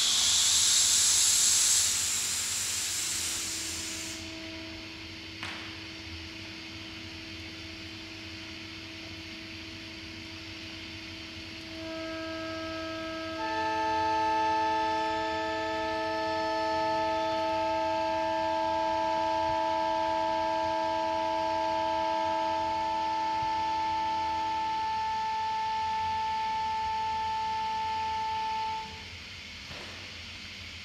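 Homemade wind instrument of plastic tubing and air bladders: a loud rush of air hiss for the first few seconds, then steady drone tones entering one after another, a low one first and several higher ones joining about halfway, sounding together as a sustained chord. The lower tones stop a few seconds before the rest, which cut off together just before the end.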